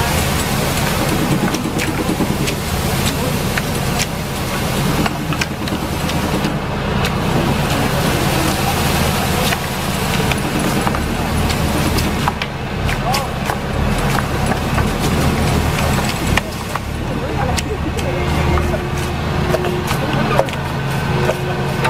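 Engine of a tractor-mounted olive trunk shaker running steadily, with repeated sharp clacks of long poles beating olive branches to knock the fruit down.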